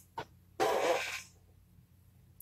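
A man's single audible breath, lasting under a second about half a second in, with a small mouth click just before it.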